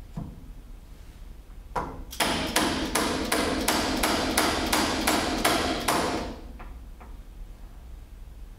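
Soft-faced mallet tapping the metal main-seal mounting punch to drive a new main seal into a suspension fork lower until flush: a rapid series of taps, about four a second, lasting about four seconds.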